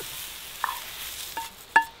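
Eggs sizzling in a frying pan while a metal spatula scrapes them out, with three short ringing clinks of spatula on pan, the loudest near the end.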